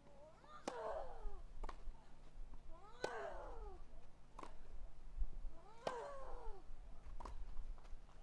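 Tennis rally: six sharp racket-on-ball strikes, roughly one every one and a half seconds, alternating between louder near hits and fainter far ones. The near player's drawn-out grunt, falling in pitch, comes with each of her three hits.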